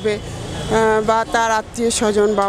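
A woman speaking into a handheld interview microphone over street-market background noise, with a low engine rumble of passing traffic in the first moment before her voice comes in.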